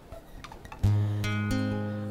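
Acoustic guitar: a chord strummed a little under a second in and left to ring, with a couple of lighter strokes on top of it as it fades.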